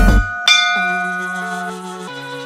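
A beat-driven music track with kick drums cuts off just after the start. About half a second in a single bell-like chime strikes and rings out, fading, marking the end of the rest countdown. Soft, sustained synth tones begin under it.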